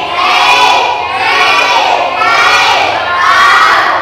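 A group of children chanting loudly together in unison, in repeated phrases about a second long.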